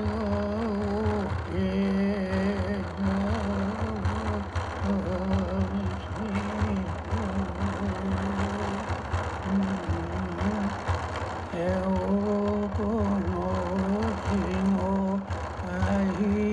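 Traditional Innu drum song: a voice chanting a repeating melody, pausing briefly for breath, over a steadily beaten Innu frame drum (teueikan).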